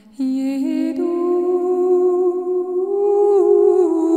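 New age music with a wordless humming voice that enters suddenly just after the start, holding long notes and sliding smoothly up to a higher note about a second in.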